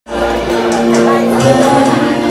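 Amplified singing through handheld microphones over loud backing music, with long held notes.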